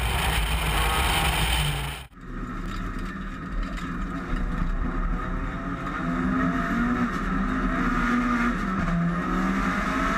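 Lancia Delta Integrale's turbocharged four-cylinder engine at racing speed, first loud and buried in wind noise on the bonnet. After a sudden cut about two seconds in, it is heard from inside the cockpit, its note rising and falling as the driver works through the gears.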